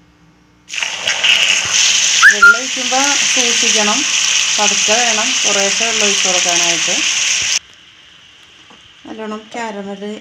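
Water poured into hot caramelised sugar in a nonstick pan, hissing and spluttering loudly: the burnt-sugar syrup stage of a plum cake. The hiss starts suddenly just under a second in and cuts off sharply after about seven seconds.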